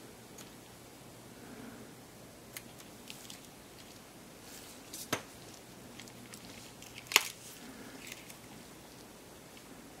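Scattered small clicks and taps from a screwdriver and the plastic parts of a Canon EOS 60D's top cover, as the screw holding the power switch's contact brush is tightened. The clicks are faint and sparse, and the sharpest comes about seven seconds in.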